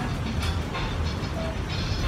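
Steady street traffic noise, a low rumble under a wash of hiss.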